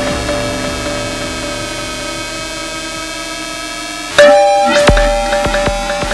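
DIY kalimba played through a Eurorack modular synthesizer, sounding as electronic music. A held note slowly fades with its pitch bending slightly upward. About four seconds in, a loud new plucked note strikes with a low thump, followed by several quick short notes.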